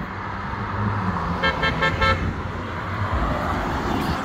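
An Audi R8 Spyder's V10 engine rumbling as it approaches and drives past. About a second and a half in there is a quick run of short car-horn toots.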